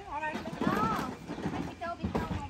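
Voices of several people talking, with a few light knocks like footfalls on the wooden deck boards.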